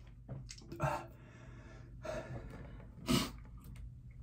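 A man's heavy breathing from the burn of an extremely hot Carolina Reaper chili chip, with two louder gasping breaths, one about a second in and one near the end.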